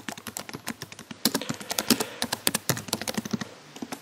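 A rapid, irregular run of light clicks, several per second, thickest through the middle of the stretch and thinning out near the end.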